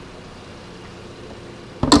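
Chevrolet Cruze's 1.8-litre Ecotec four-cylinder idling with a steady low hum, then a sharp click near the end as a hand works the hood's latch.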